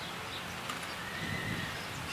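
A horse calls briefly, about a second and a half in.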